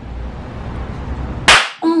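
Low steady background noise, then about one and a half seconds in a single loud, sharp crack, cut off into a brief dead-silent gap.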